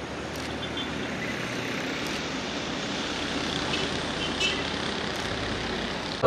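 Road traffic: cars and a pickup driving along the road, a steady wash of engine and tyre noise that grows slightly louder over the seconds.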